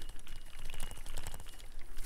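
Bicycle tyres rolling over fallen leaves and a brick-paved cycle path: a dense, irregular crackle, with wind rumbling on the microphone.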